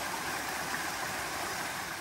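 Stream water rushing steadily down a narrow rock channel.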